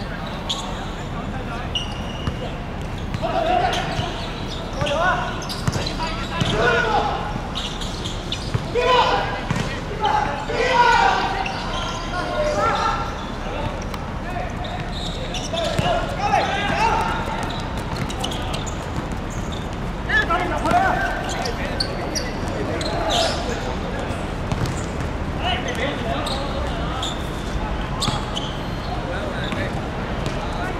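Players shouting and calling to each other on the pitch, with the sharp thuds of a football being kicked and bouncing on a hard court.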